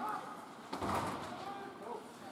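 Ice hockey game in an arena: distant shouted calls echo around the rink, and a single thud comes a little under a second in.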